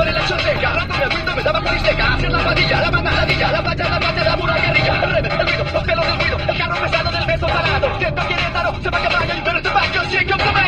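Voices from a car radio playing inside a moving car, over the steady low rumble of the car driving.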